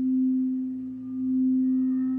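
Crystal singing bowl sung by a mallet rubbed around its rim: one low steady tone with faint higher overtones, swelling and fading about every second and a half.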